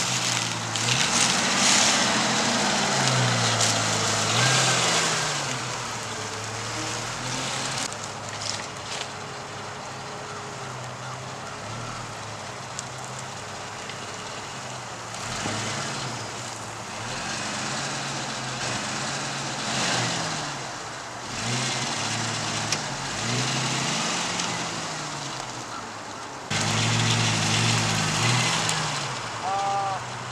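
Jeep Cherokee engine running as the SUV drives slowly across a rough field, its pitch rising and falling several times as the throttle is worked, with tyre noise over dry grass.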